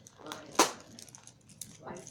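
Clear plastic bag crinkling as it is handled, a string of small crackles with one sharp, louder crackle about half a second in.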